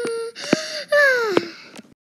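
A child's voice wailing: a held note that stops shortly after the start, a brief higher note, then a longer note falling in pitch. A few sharp knocks from the toys being handled.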